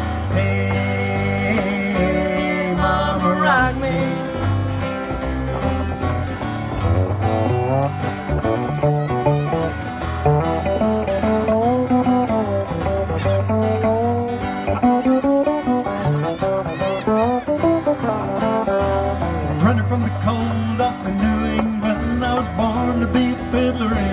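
Live acoustic guitar and electric upright bass playing an instrumental break in a country song, with a steady bass line under strummed chords and a sliding melody line.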